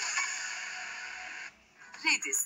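TV channel bumper jingle music played through a television's speaker, slowly fading and then cutting off about three-quarters of the way through, leaving a brief near-silent gap.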